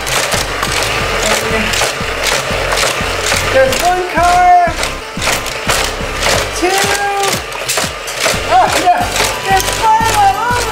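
Motorized booster wheels of a Hot Wheels Criss Cross Crash trackset running while die-cast toy cars clatter along the plastic track and through the crash zone, in a busy stream of clicks and knocks.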